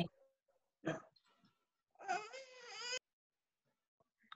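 A baby fussing: a short cry about a second in, then a whiny, wavering cry lasting about a second, heard over a video call.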